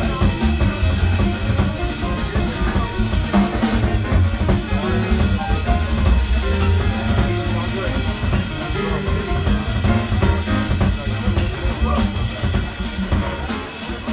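Live jazz played by a small acoustic group: grand piano over a walking double bass, with a drum kit keeping time.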